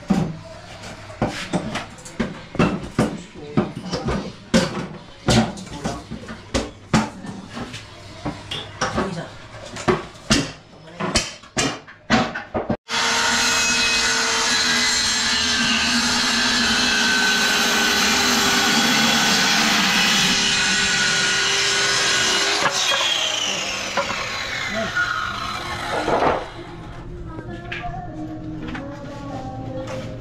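A run of sharp knocks on wood, roughly one or two a second, for about the first half. Then a handheld electric circular saw runs steadily, cutting a plywood board, for about ten seconds. When it is released it winds down with a long falling whine.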